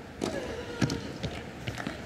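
A few sharp knocks of a tennis ball bouncing on a hard court: one about a quarter second in, the loudest near the middle, and two close together near the end.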